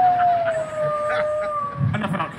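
A long wolf-style howl on the stage show's sound: one held note that slowly falls in pitch and breaks off near the end.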